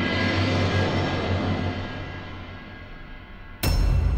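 Dramatic background score: a low drone with held tones that slowly fades, then a sudden loud hit followed by a deep rumble just before the end.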